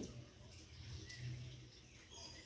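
Quiet ambience with a faint bird chirp about a second in.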